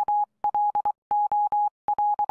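Morse code beeps standing for a telegraph message: one steady high tone keyed on and off in a quick, irregular run of short and long beeps.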